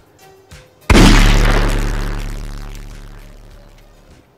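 A loud, distorted, bass-boosted boom sound effect hits about a second in, then fades slowly over the next three seconds with a low droning tail.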